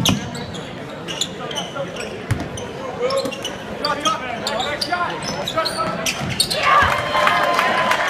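Basketball game in a gym: the ball bouncing on the hardwood court amid short sharp knocks and squeaks, over the voices of spectators, which swell into louder shouting in the last second or so.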